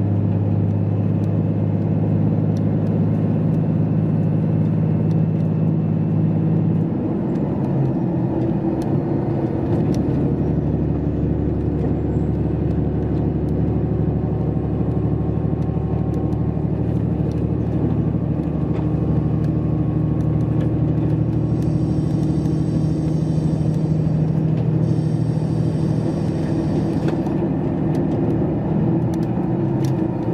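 Running noise inside a KiHa 281 series diesel express train: a steady engine hum and rumble on the rails, with the engine note changing about seven seconds in and again about ten seconds in.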